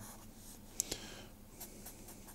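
Felt-tip marker drawing short strokes on paper: faint scratching, with one sharper stroke about a second in and a few light ticks after it.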